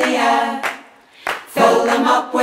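A cappella choir singing: a held note that fades out, a short break about a second in, then the voices come back in.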